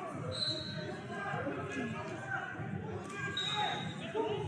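Indistinct voices of several people echoing in a large gymnasium, over a steady rumble of hall noise, with two brief high-pitched tones, one just after the start and one near the end.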